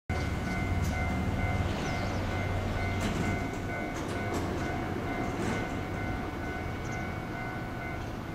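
Railway station ambience: a low rumble, strongest in the first few seconds, under a steady high electronic tone that stops near the end.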